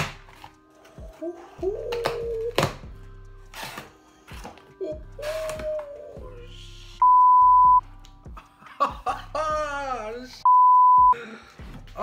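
Knocks, thuds and clicks of a large boxed set being pried open with a screwdriver, over steady background music. Two loud, steady electronic beeps cut in, the first about seven seconds in and the second near the end.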